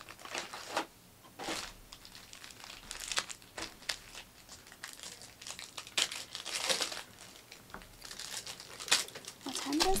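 Plastic wrapping of trading-card packs crinkling and rustling in the hands, in irregular short bursts, as the packs are handled and opened.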